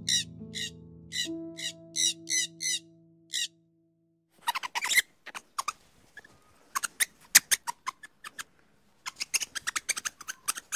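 Resplendent quetzal giving a rapid series of short squawking calls, about three a second, over background music with held notes. The calls and music stop about three and a half seconds in, and after a short gap come irregular sharp clicks and ticks.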